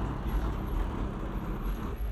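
A car's engine running as it creeps slowly along at low speed, a steady deep low rumble.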